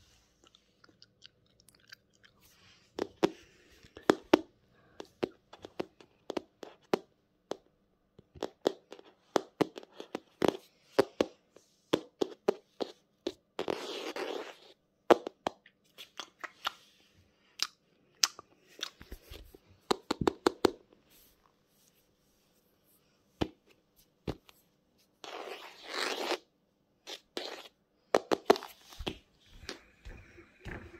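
Close-miked crunching and sharp, irregular clicks, with a longer rustling burst about halfway through and another near the end.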